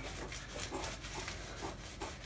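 Gloved hands smearing and pressing a thick, rubbery elastomeric roof coating (Jaxsan 600) into carved foam, a faint irregular wet rubbing and squishing.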